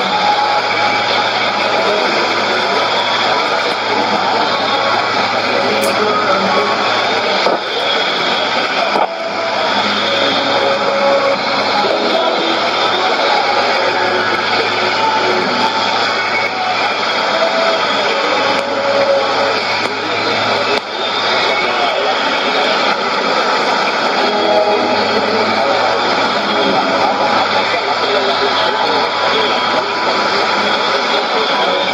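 Shortwave AM broadcast on 9560 kHz playing through a Sony ICF-2001D receiver: a voice barely heard under heavy, steady hiss and static from weak reception.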